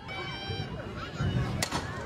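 Softball bat striking a pitched ball: one sharp crack about one and a half seconds in, over stadium crowd noise, with a high voice calling out near the start.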